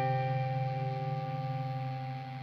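Music: a held electric guitar chord with a chorus-like effect, ringing and slowly fading, in a slow doom/stoner rock track.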